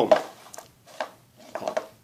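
Hard plastic drinking cups knocking and clattering as they are moved by hand and set down on a shelf: a few separate light knocks, then a short cluster of them.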